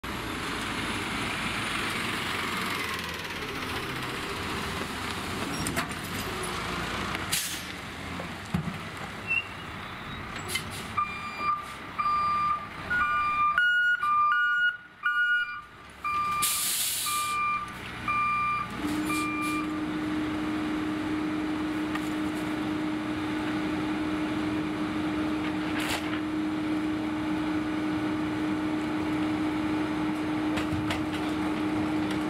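Peterbilt 520 rear-loader garbage truck running, with short hisses of air brakes and a reversing alarm beeping about once a second for several seconds midway. A steady low hum sets in after the beeping stops.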